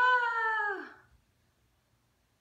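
A baby's single drawn-out wordless cry, like a whine or squeal, held for about a second, rising slightly and then falling in pitch as it dies away.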